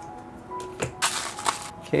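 Hands handling small plastic Bakugan toys and their packaging: a few sharp clicks and a brief rustle about a second in.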